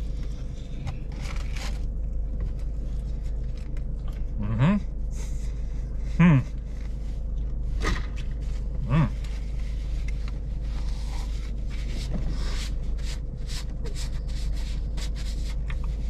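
A man chewing a bite of crispy fried chicken, the coating crackling and crunching in small clicks, with three short 'mm' hums of approval a few seconds apart. A steady low hum of the car runs underneath.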